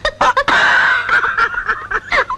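A man and a woman laughing, with short bursts of laughter and then a long, high-pitched laugh from about half a second in.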